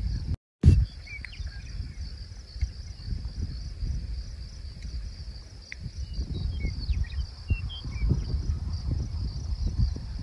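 Wind buffeting the microphone in uneven gusts, stronger in the second half, over a steady high insect chorus. A few short bird chirps come through.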